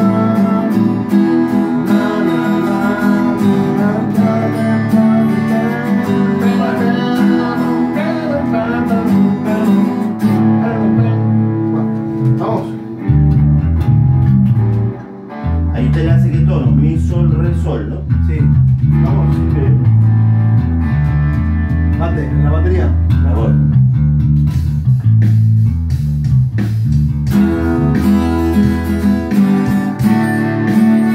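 Electric guitars playing together, plucked notes and chords. About 13 seconds in, a bass guitar joins with deep notes under the guitars, pauses briefly, then stops shortly before the end.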